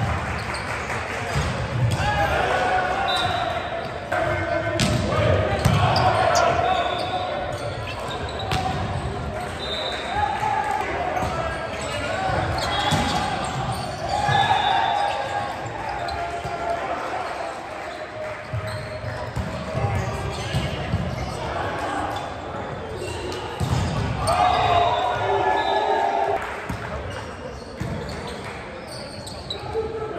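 Volleyball play in a gym: players calling and shouting to each other, with sharp knocks of the volleyball being hit and bouncing on the hardwood court, echoing in the large hall.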